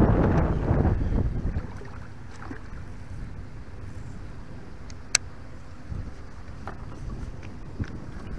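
Wind buffeting the microphone, heaviest in the first second, then a steady lower rush, with a single sharp click about five seconds in.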